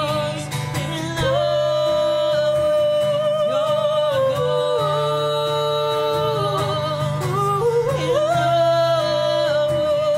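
Female vocals holding long, wavering notes that glide from pitch to pitch without clear words, over acoustic guitar accompaniment in a live song.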